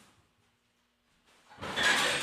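Handling noise: a faint short rustle at the start, then a louder rustling scrape that begins about a second and a half in and lasts about a second.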